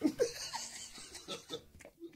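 Laughter in a few short, weakening bursts that trail off, mixed with a bit of talk.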